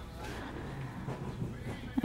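Low, steady background noise in a store aisle, with no distinct event standing out.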